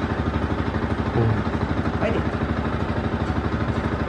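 Yamaha sport motorcycle engine idling steadily, with an even, fast pulse.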